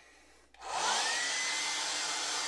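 Hair dryer switched on about half a second in to dry fresh paint, its motor whine rising in pitch as it spins up and then holding steady over a rush of air.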